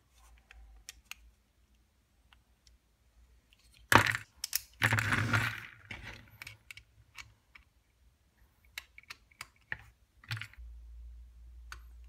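Small clicks and knocks of hand tools and a plastic-and-metal DeWalt folding utility knife being handled on a cutting mat during disassembly. A sharp knock about four seconds in is followed by a second or so of rattling and scraping, then scattered light clicks.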